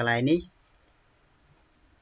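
A man's voice finishes a word in the first half second, then near quiet with a single faint computer mouse click.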